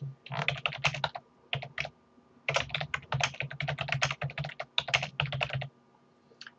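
Rapid keystrokes on a computer keyboard typing a short line of text, in two quick runs with a pause of about a second between them.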